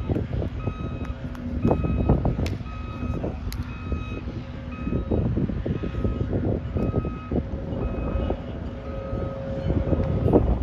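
A vehicle's reversing alarm beeps steadily in the background, one beep a little over a second apart, with construction machinery the likely source. Low wind rumble runs under it, and a few sharp knocks come through.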